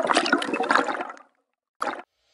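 Scuba diver's exhaled bubbles from the regulator, heard underwater as a dense bubbling crackle that stops about a second in, with one more short burst near the end.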